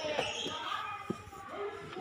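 A small child's hands and knees knocking on the padded platforms of an indoor soft-play climbing frame, with a short sharp knock about a second in. Voices talk in the background, and the large room echoes.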